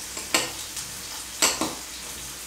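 Chopped capsicum and Schezwan sauce sizzling steadily in oil in a stainless steel frying pan, with two sharp clinks of kitchenware about a second apart.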